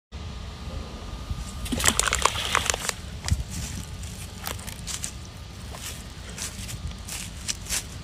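A rock tossed into a shallow, silty creek, splashing about two seconds in, then water sloshing as the disturbed creek bed settles, with scattered small clicks and knocks.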